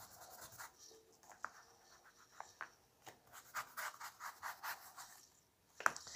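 Faint scratchy rubbing of a small foam ink blending tool worked along a paper edge to distress it with ink, in short scattered strokes with a quicker run of strokes about three and a half seconds in.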